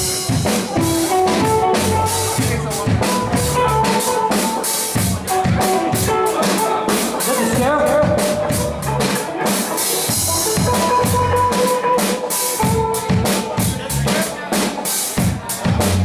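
Live reggae band playing: a drum kit keeps a steady beat with rimshots and bass drum, under electric guitar and other pitched instruments.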